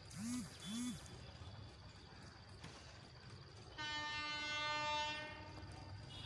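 An electric locomotive's horn sounds one steady blast of about a second and a half, starting about four seconds in. Beneath it runs the low, steady rumble of the train at speed. Within the first second come two short calls that each rise and fall in pitch.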